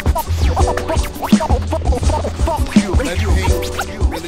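Hip hop beat with a heavy bass line and turntable scratching, short sliding pitch sweeps cut in over the rhythm throughout.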